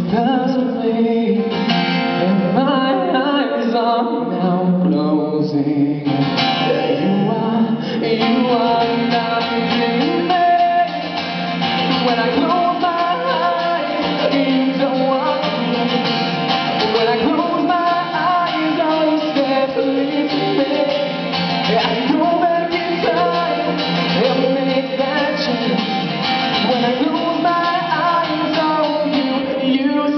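A live song performance: a singer's voice over guitar accompaniment.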